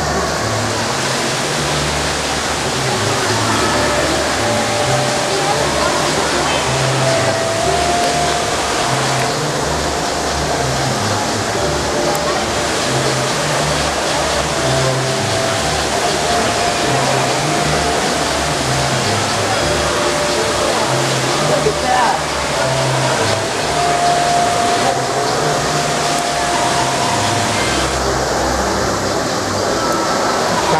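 Steady rush of falling water from an indoor fountain, mixed with indistinct crowd chatter and background music with a shifting bass line.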